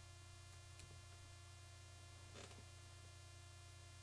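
Near silence: a steady low electrical hum, with a couple of very faint, brief soft touches.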